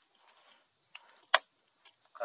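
Two short, sharp clicks from a plastic water bottle being handled, a faint one about a second in and a louder one just after.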